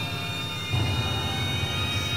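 A loud, steady rumbling drone with a fluttering low end and a thin whine above it, dropped in as a sound effect; it swells a little under a second in.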